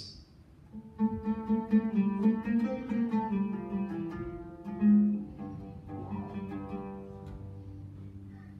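Solo oud played by plectrum: a short demonstration passage that starts about a second in with a quick run of plucked notes, has one strong note around five seconds, then slows and fades to softer notes.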